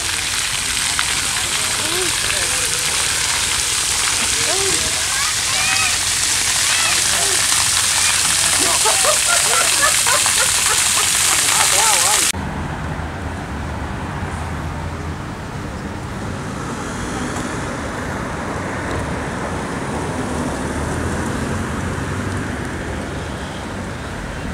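Splash-pad water jets spraying with a steady hiss, with children's voices calling out over it. About halfway through the sound cuts off abruptly to quieter street ambience with a low steady rumble.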